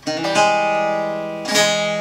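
Kopuz, a long-necked Turkish lute, strummed: a chord struck at the start, again a third of a second later and again near the end, the strings ringing on between strokes.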